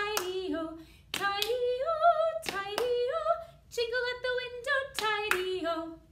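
A woman singing a children's action song unaccompanied, in short phrases of held, stepping notes, with sharp hand claps among the phrases. The singing ends on a falling phrase near the end.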